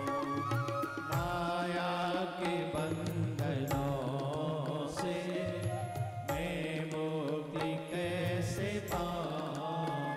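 Indian devotional bhajan music for Shiva: a wavering melody line over a steady low drone, with occasional percussion strokes.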